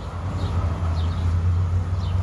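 A low vehicle rumble growing steadily louder.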